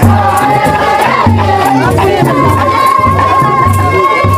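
Gumuz dance music: a drum beating a steady, repeating rhythm under a crowd's singing and shouts, with a long high note held through the second half.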